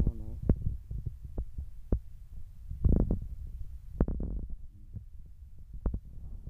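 Low rumble with irregular soft thumps and clicks, typical of handling noise on a handheld camera's microphone.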